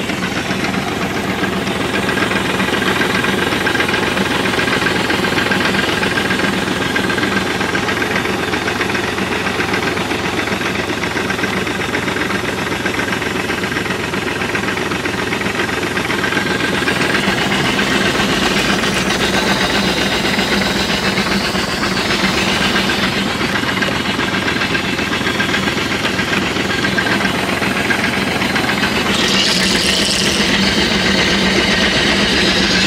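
Tractor engine running steadily, driving a sprayer tank's diaphragm pump through the power take-off to keep a thick paint-and-water mix stirred. The pump is under heavy strain from the paint.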